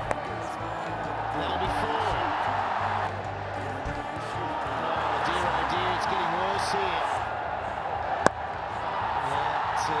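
Stadium crowd noise mixed with music during a T20 cricket match. A sharp crack of bat on ball comes at the very start and a louder one about eight seconds in, each a boundary stroke.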